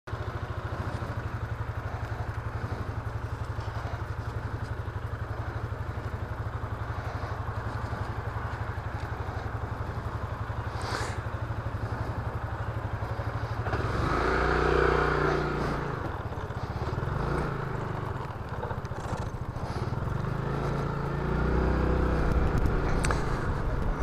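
Yamaha Majesty maxi scooter engine idling with a steady low rumble, then revving up to pull away about 14 seconds in and rising again near the end as it picks up speed.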